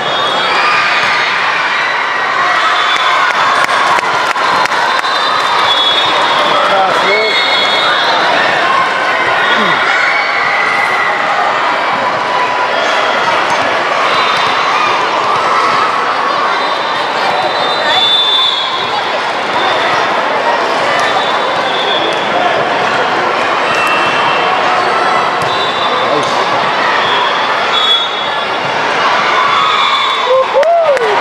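Loud, steady din of a busy indoor sports hall: many overlapping voices of players and spectators, with repeated thuds of volleyballs being struck and bouncing on the hardwood floor and short high squeaks.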